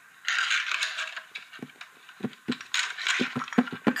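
A drum roll tapped out by hand on a surface: short knocks that speed up toward the end. Earlier, the recording device rubs against clothing twice.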